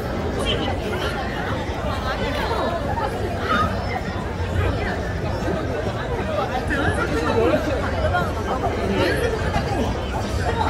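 Street crowd: many pedestrians' voices talking over one another in a steady babble, with no single voice standing out, over a constant low rumble.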